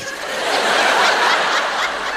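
A large theatre audience laughing together, the laughter swelling slightly after the start and holding.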